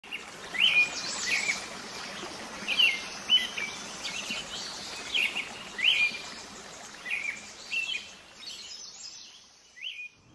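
Small birds chirping: short, sharply rising chirps, a dozen or so spread irregularly, over a steady outdoor hiss, thinning out near the end.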